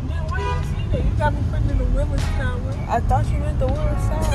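Steady low road rumble of a car on the move, heard from inside the cabin, with a voice over it in wavering pitched phrases.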